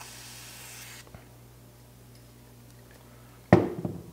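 Aerosol lubricant can hissing for about a second as a light spray is put on an SU carburetor's dashpot piston. Near the end comes a single sharp knock with a short ring.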